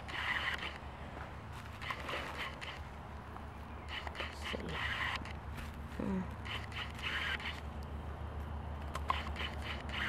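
Handling noise: cloth rubbing and scraping over the camera's microphone in short scratchy patches about every second or two, over a steady low hum, with a few short falling sounds near the middle.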